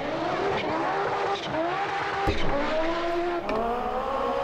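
1980s Group B rally car engines running hard on a gravel stage, the engine note rising several times as they accelerate, with a sharp crack a little past halfway.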